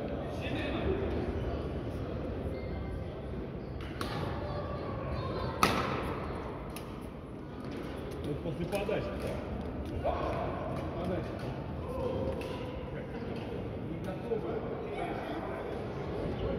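Badminton racket strings striking a shuttlecock: a few sharp smacks, the loudest about five and a half seconds in, over the echoing murmur of a sports hall with players' voices from other courts.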